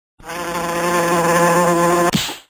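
A loud, steady, fly-like buzzing sound effect that starts about a fifth of a second in and holds one pitch, with a slight waver.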